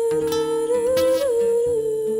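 A woman singing one long held note that bends up slightly about a second in and settles back, over plucked acoustic guitar notes.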